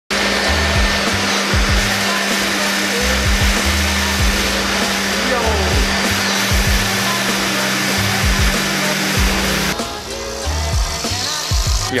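Electric air blower running steadily with a constant hum, its nozzle blowing on a fidget spinner to spin it; the blower cuts off suddenly about ten seconds in.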